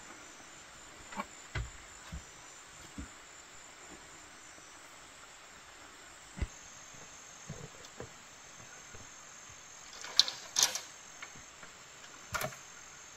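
Insects in the forest keep up a steady, thin, high drone. Scattered light knocks and thuds of bamboo being stepped on and handled come through it, a few in the first three seconds and a louder cluster about ten seconds in.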